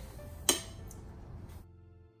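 Granulated sugar pouring into a stainless steel mixing bowl, with a single sharp clink about half a second in.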